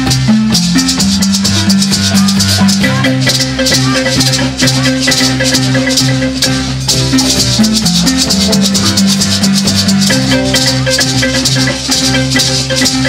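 Live Zimbabwean-style marimba band music: marimbas with electric guitar, a drum kit's cymbals and maracas keeping a fast, steady shaker rhythm over repeating bass notes.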